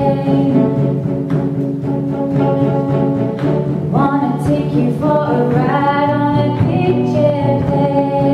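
Female voices singing in close harmony over acoustic guitar, holding long notes and sliding up into new ones about four and six seconds in.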